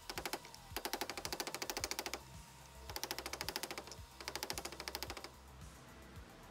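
Mallet striking a 32mm socket to drive an oil seal into an aluminium transmission cover: fast, even taps, about ten a second, in four runs with short pauses between.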